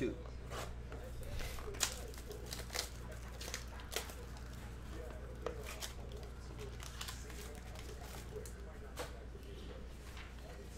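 A cardboard trading-card mini box being torn open, with plastic wrapping crinkling, making scattered sharp crackles and taps. A steady low hum runs underneath.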